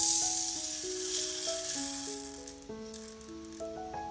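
Dry green lentils pouring into a nonstick saucepan: a rattling hiss that starts abruptly, is loudest at once and tapers off after about two and a half seconds. Background music with held notes plays underneath.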